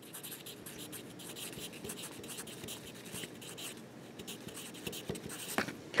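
Handwriting on a paper worksheet: the writing tip scratches steadily across the paper with many small ticks from the strokes as the words "methyl salicylate" are written, and a short sharper click comes near the end.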